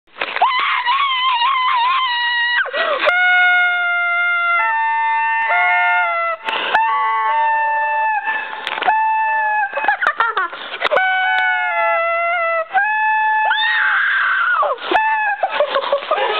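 Long, high-pitched screams held for several seconds at a time, stepping from one pitch to another, sometimes two voices at once, with short gasping breaks between them.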